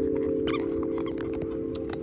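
A vibraphone's last chord ringing on after the strike and slowly fading, with light scattered clicks over it.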